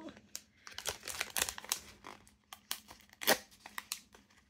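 Clear plastic packaging crinkling and crackling in irregular bursts as it is handled and pulled open, with one sharper crackle near the end.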